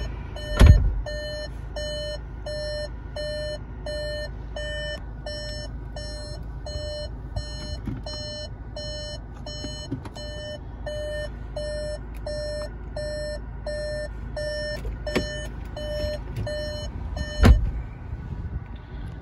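The SEAT Ateca's in-car warning beeper with reverse gear selected: short electronic beeps at an even pace, about three every two seconds. A heavy thump comes shortly after the start and another near the end.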